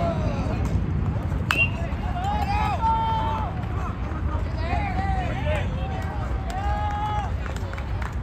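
A metal baseball bat strikes the ball with a single sharp ping about a second and a half in, followed by spectators shouting and cheering as the hit is run out.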